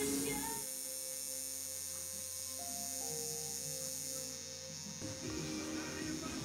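Tattoo machine buzzing steadily as it works on skin, starting just under a second in and stopping about five seconds in, with soft background music throughout.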